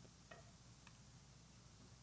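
Near silence: steady room hum with a couple of faint, short clicks from laptop keys being typed.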